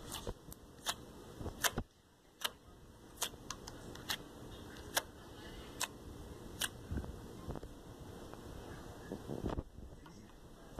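Red slime in a plastic tub being pressed and poked with fingers, giving a string of sharp little clicks and pops about once a second over a low squishing.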